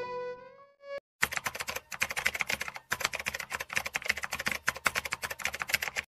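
Violin music fading out, then after a brief silence a typing sound effect: rapid, irregular keyboard clicks for about five seconds, stopping suddenly at the end.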